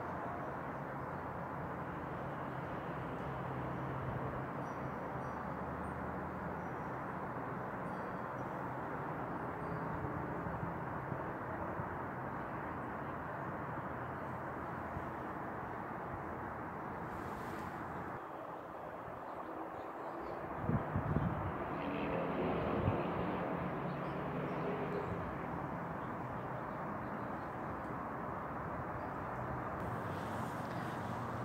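Steady outdoor background rumble and hiss, with a few brief thumps a little over two-thirds of the way through.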